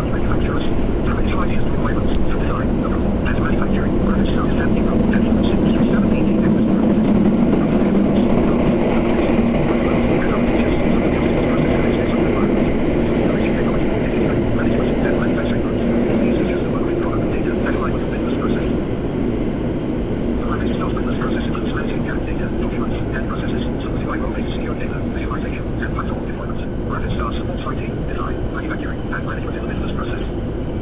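Toei Shinjuku Line subway train running through a tunnel, heard from inside the car. A loud steady rumble of wheels on rail with a low droning tone swells and then slowly fades as the train slows into a station, over a patter of short rail clicks and squeaks.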